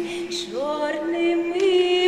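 A woman singing a Lemko folk song. Her voice slides up into a new phrase about half a second in, over a steady held note.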